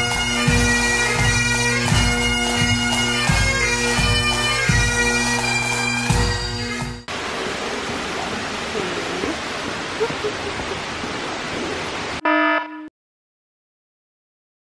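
Bagpipe music, a steady drone under a melody with a low regular beat, lasting about seven seconds before cutting off abruptly. Then a steady rushing hiss of flowing water, a brief tone just after twelve seconds, and a sudden drop to silence.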